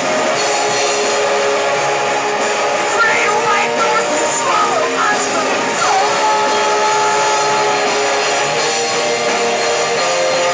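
A rock band playing live: electric guitars, keyboard and drums. A voice sings over the band through the middle, ending in a long held note.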